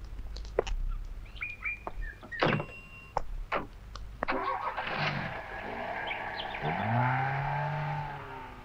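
Premier Padmini taxi's engine running, with a few sharp knocks and clicks from the car door and birds chirping. About four seconds in the engine sound fills out and grows louder, with shifting pitch, as it revs.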